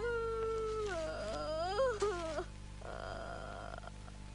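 A high, wavering wailing voice that holds a note and then bends up and down in pitch for about two and a half seconds, followed by a shorter, rougher sound.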